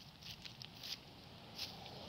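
Faint, irregular footsteps and light rustling of flip-flops on a dirt footpath: a few soft taps spread over the two seconds.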